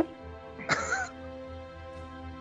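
Quiet boss-battle background music of long held chords, with a short burst of a person's voice about three-quarters of a second in.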